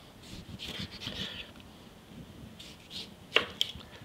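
A chef's knife slicing through a tomato on a wooden cutting board: soft slicing strokes, then a sharp knock of the blade on the board near the end, followed by a smaller tap.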